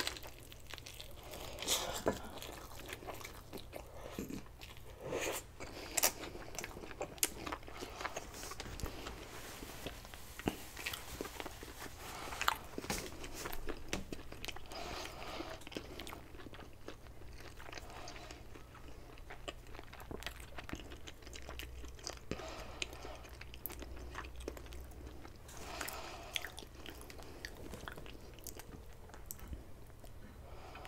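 Close-miked biting and chewing of a sushi burrito (nori-wrapped rice and fish), with many short wet clicks and smacks of the mouth.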